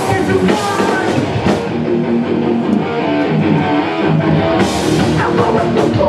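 Hardcore band playing live and loud on electric guitars, bass and drum kit.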